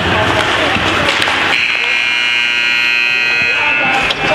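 Ice rink scoreboard buzzer sounding one steady tone for about two seconds, starting about a second and a half in, over voices in the arena.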